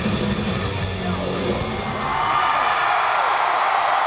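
Live heavy metal band with distorted electric guitars and bass, heard through the arena PA, playing out the end of a song. About two seconds in the low end drops away and the arena crowd's cheering and screaming swells up and carries on.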